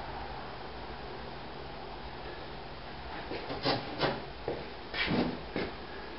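Low room tone for about three seconds, then a handful of short wooden knocks and scrapes as a piece of wall-framing lumber is handled and fitted into place.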